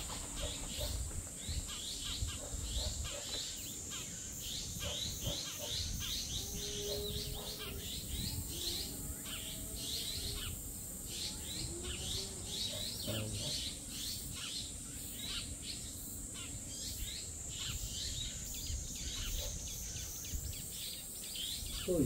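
Birds chirping over and over in short, quick high notes, over a steady high-pitched insect buzz.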